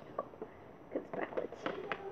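Handling noise: quiet for about a second, then a quick run of sharp clicks and knocks as the recording phone or camera and the things in hand are moved about.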